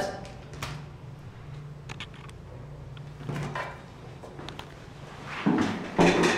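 A few light clicks and knocks of things being handled, over a steady low hum in a small room.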